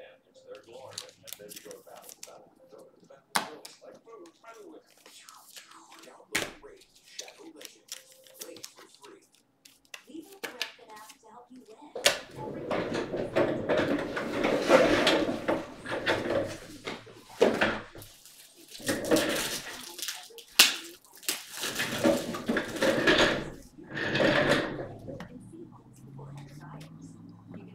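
A few faint handling noises and sharp clicks. Then, from about halfway, loud talking that goes on until near the end.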